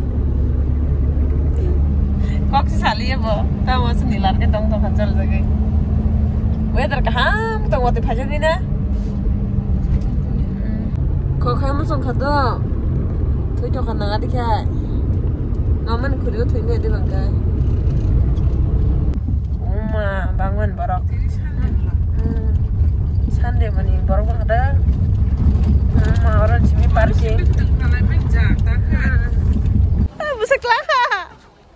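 People talking over a steady low rumble, like a vehicle in motion heard from inside, with a faint steady hum in the first ten seconds or so.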